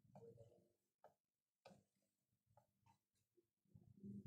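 Near silence, with a few faint ticks of chalk on a blackboard as a word is written.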